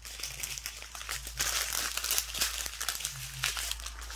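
Thin plastic resealable drill packets from a diamond painting kit crinkling as they are handled, a dense irregular crackle that gets louder after about a second.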